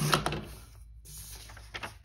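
Sliding paper trimmer cutting a sheet of vellum: the cutting head is pushed along its rail, with a knock at the start, a scraping run about a second in and a few clicks near the end.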